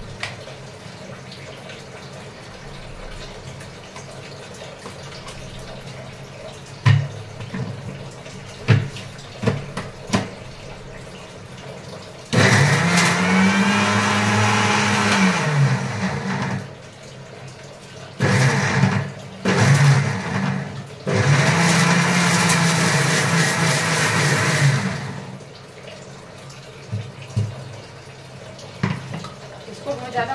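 Electric mixer grinder (mixie) running in bursts: one run of about four seconds whose motor pitch rises and then falls as it spins up and down, then a few short pulses and a final run of about four seconds. Before it, several sharp clicks and knocks as the jar is fitted on the base.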